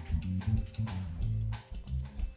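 Live band playing a groove: electric bass notes over a drum kit, with guitar.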